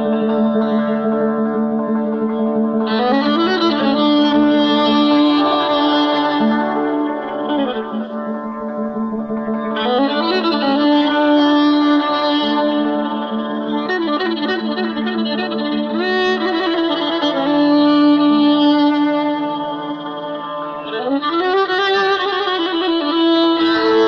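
Violin playing a slow, free-metre improvisation in the Persian classical mode Mahur, with long held notes joined by sliding glides up and down, a lower note sounding steadily beneath.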